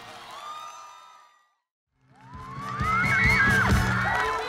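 The last notes of a live trot band fade out, followed by a moment of silence. Then a band starts up with drum hits under a crowd cheering and screaming.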